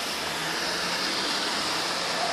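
Car traffic on a wet, slushy city street: a steady hiss of tyres on the wet road.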